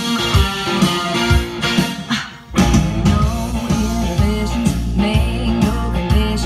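Guitar-led rock music played back from tape on an Akai 1721W reel-to-reel deck through its built-in speakers. The music drops away briefly about two and a half seconds in, then returns with a heavier bass.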